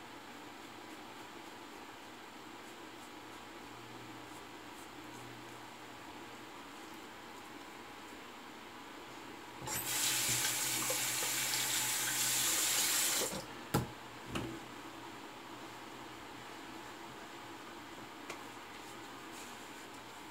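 Sink tap running for about three and a half seconds about halfway through, then shut off, followed by two short knocks.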